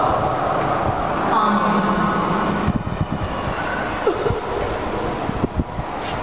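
A voice singing held notes in a reverberant church for about the first second and a half, then a low mix of voices and movement with several dull knocks and thumps.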